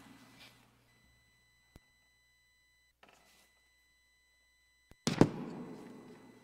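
A few small knocks, then a loud thump a little after five seconds in that rings briefly, as a person moves about a church sanctuary. Under it a faint steady high electronic whine and a low hum come from the sound system.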